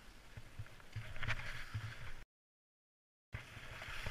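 Skis sliding over snow with wind gusting on the camera's microphone, growing louder about a second in. The sound then drops out completely for about a second before returning.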